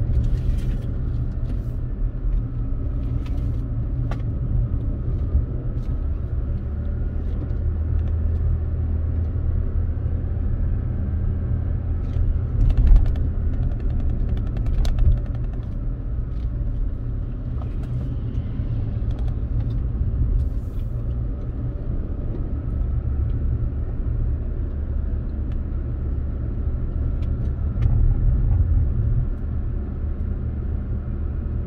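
Road and engine noise heard inside a Toyota RAV4's cabin while driving: a steady low rumble, with a few brief knocks and clicks, the loudest two about halfway through.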